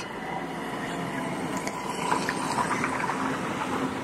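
Steady outdoor noise with the faint, even hum of a motor running at a distance.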